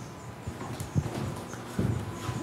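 A few footsteps on a hard floor, about one and three-quarters of a second apart, as a person walks away from a chalkboard, over a faint steady room hum.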